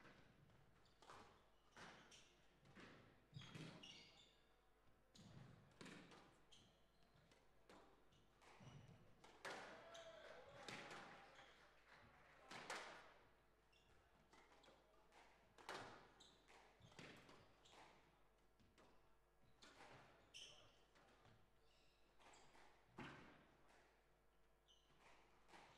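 Faint squash rally: the ball knocking sharply off rackets and the court walls at irregular intervals, with a few short, high squeaks of court shoes on the floor.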